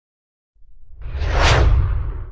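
Logo-intro sound effect: a whoosh that starts about half a second in, swells to a peak around a second and a half and falls away, over a deep rumble.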